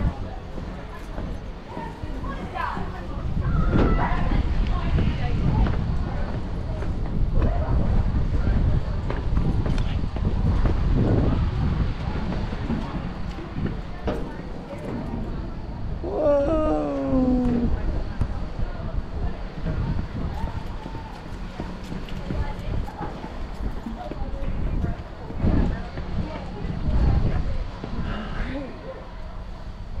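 Wind rumbling on the microphone at the top of an open steel observation tower, with other visitors' voices faint in the background. About halfway through, one voice calls out with a long falling pitch.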